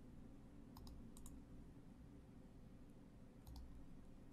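Faint computer mouse button clicks: a few quick clicks about a second in and a pair near the end, over a low steady room hum.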